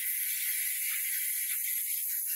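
Compressed-air blow gun giving a steady hiss as it blows off a freshly sandcarved rock, clearing it before a black paint colour fill.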